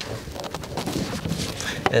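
Rubber hose being pushed and worked onto the plastic outlet socket of a water container: rubbing, creaking handling noise.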